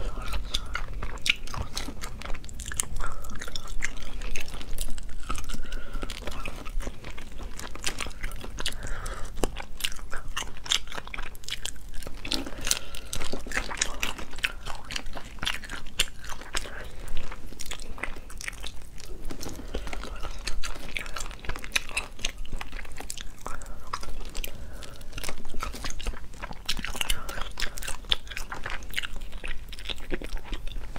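Close-miked chewing and biting on braised crayfish, with many sharp clicks and crunches as the shells are cracked and pulled apart by hand.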